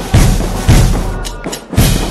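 School marching band of bugles and drums playing: bugles sounding held notes over heavy bass-drum beats.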